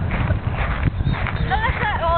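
Low, irregular rumble of wind buffeting the camera microphone, with a girl's voice rising and falling in the last half second.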